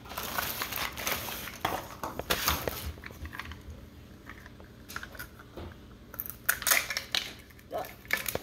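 Plastic wrapping on a Mini Brands capsule crinkling and rustling as it is picked and peeled open by hand, in irregular small crackles and rustles.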